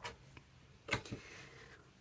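Quiet handling of a card frame on a tabletop: a short sharp tap about a second in, followed by a fainter one.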